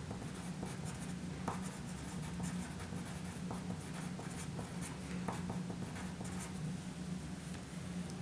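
Pencil writing on paper: the graphite point scratches with faint ticks as a short line of handwriting is written. A low steady hum runs underneath.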